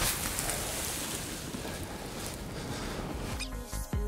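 Even rustling hiss of straw being shaken out and spread by hand. Background electronic music with a beat comes in near the end.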